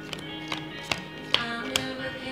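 A song playing in the background, with held notes and a sharp click roughly twice a second.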